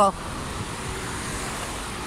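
Steady noise of road traffic passing by, a continuous even rush with no distinct engine note.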